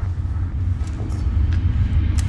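A steady deep rumble, with a few faint clicks over it.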